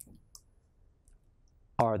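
A few faint clicks from a Dell laptop's touchpad: one right at the start, another about a third of a second later, then a fainter tick.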